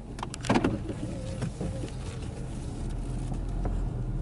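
Car engine and road rumble heard from inside the cabin, growing louder toward the end. A few sharp clicks and a short vocal sound come about half a second in.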